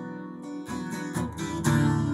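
Acoustic guitar strummed, about four strokes with the chords ringing between them, the strokes getting fuller near the end.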